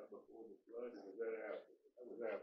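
Faint, distant speech too low to make out: a person in the audience answering off-microphone.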